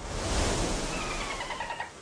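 Logo sound effect: a sudden rush of noise that slowly fades, with faint, slightly falling whistle-like tones in the second half.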